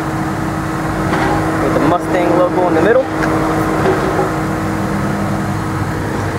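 A steady low mechanical hum, with a voice speaking briefly from about one to three seconds in.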